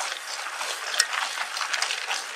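Mountain bike rolling fast over a dry dirt track: tyre crunch on grit and a steady clattering rattle from the bike, with one sharper click about a second in.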